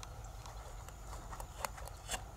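Freshwater mussel shells clicking and knocking as they are handled and pried open by hand. There are several short, sharp clicks at uneven intervals, and the loudest comes a little past halfway.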